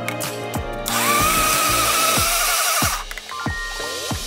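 Electric blender motor starting about a second in with a rising whine, running steadily for about two seconds on a jar of chopped orange-coloured pieces, then stopping. Background music with a beat plays throughout.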